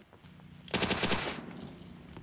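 A rapid burst of automatic gunfire, about half a second long, starting under a second in, with a ringing tail as it dies away.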